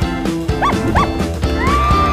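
Upbeat jingle music with a steady beat. Over it come two short yelping calls, then near the end a long call that rises and slowly falls.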